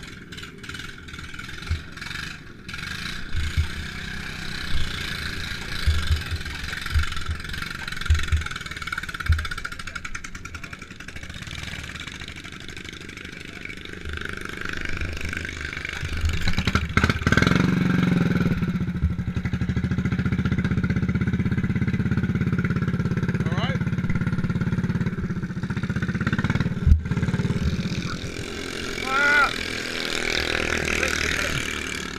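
Racing lawn mower's small single-cylinder petrol engine being got going after hard starting: a run of irregular low thumps, then about halfway through the engine catches and runs steadily until near the end.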